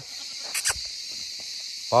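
Steady high chirring of crickets or similar insects, with two quick sharp clicks close together about half a second in.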